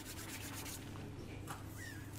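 Faint rubbing and scratching sounds, a quick run of them in the first second, over a steady low hum of room noise.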